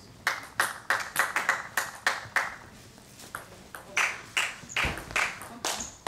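Celluloid-type table tennis ball clicking off bats and the tabletop: a quick run of sharp clicks, about four a second, in the first two seconds. After a short lull comes another run from about four seconds in, with one dull thud among them.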